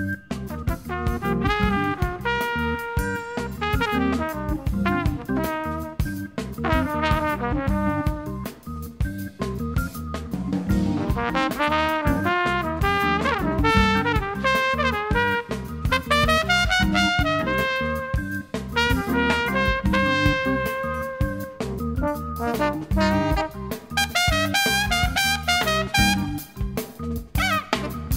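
Contemporary jazz ensemble of trumpet, tenor saxophone, trombone, organ and two drummers playing. The brass horns carry moving melodic lines over a steady drum beat.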